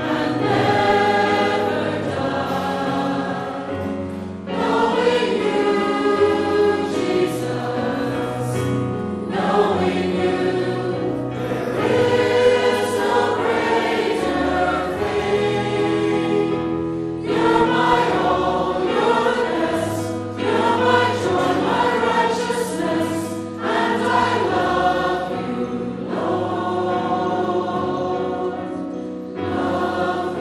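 A church congregation singing a hymn together, line by line, with short breaks between phrases every few seconds.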